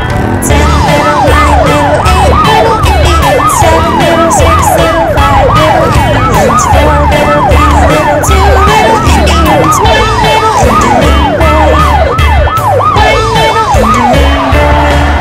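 Cartoon police-car siren in a fast yelp, rising and falling a few times a second, over backing music with a steady beat.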